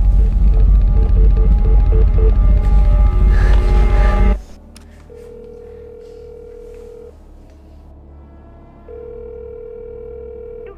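Loud, deep music that cuts off suddenly about four seconds in. Then a telephone ringback tone is heard twice through the handset, each about two seconds long: the line ringing at the other end with no answer.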